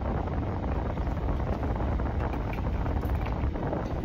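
Steady low rumble and hiss of road and engine noise inside a moving car's cabin.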